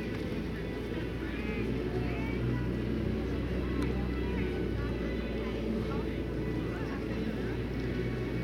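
Steady low background hum with faint, indistinct voices over it.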